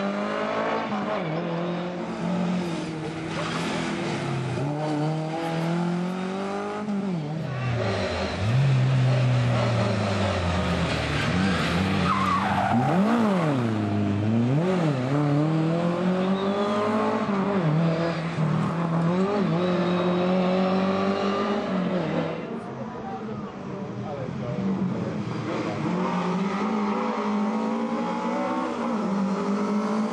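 A Lada rally car's four-cylinder engine revving hard as it is driven through a tight stage. The note climbs through the gears and drops repeatedly, swinging sharply up and down twice about halfway through, with tyre squeal in the turns.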